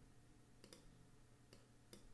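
A few faint, scattered computer mouse clicks over near silence, from placing pen-tool points.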